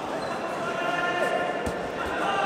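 Indistinct voices of the crowd and people around the mat carrying through a large sports hall, with a single dull thud near the end.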